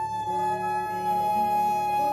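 Live blues band playing, with one long sustained lead note that bends up into pitch just before it starts, holds steady over a held backing chord, and drops away shortly after.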